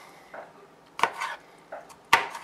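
A kitchen knife chopping pickle slices by hand on a plastic cutting board. One sharp knock of the blade on the board comes about a second in, with softer cutting sounds around it.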